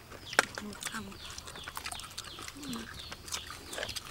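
Several people eating cooked snails: many short sucking slurps and clicks of snail shells being handled, with a few soft murmurs of voice.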